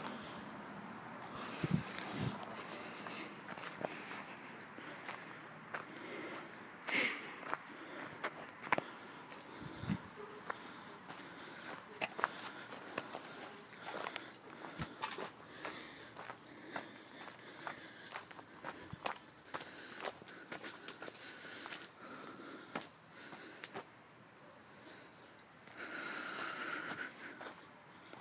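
A steady, high-pitched insect chorus, growing a little louder toward the end, with irregular footsteps and small knocks on a dirt path.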